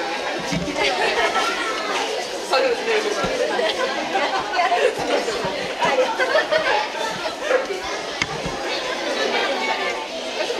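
Crowd chatter: many people talking at once in a large hall, a steady babble of overlapping voices.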